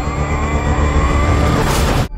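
Film sound effects: a car engine running hard, with a steady high-pitched ringing tone held over it, the ringing of deafened ears. A brighter rush of noise comes near the end, then the sound cuts off suddenly.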